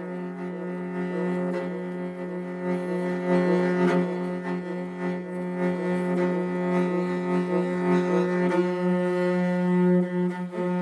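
Morin khuur (Mongolian horse-head fiddle) bowed in a galloping horse rhythm. A steady low note sounds throughout, while a higher note above it is broken into short, evenly repeating strokes.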